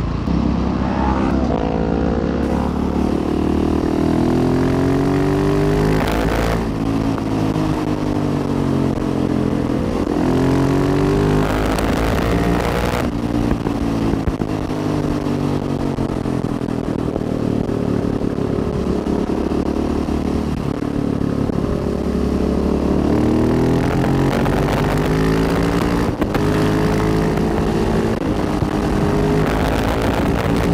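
Husqvarna 701 supermoto's single-cylinder engine heard from on the bike, pitch climbing again and again as it accelerates through the gears and dropping back at each shift, over a steady rush of wind noise.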